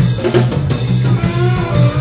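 Live jazz-fusion band playing: drum kit keeping a busy beat over a heavy, driving bass line, with a lead line bending and wavering in pitch above.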